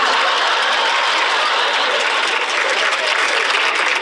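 Studio audience laughing and applauding after a punchline.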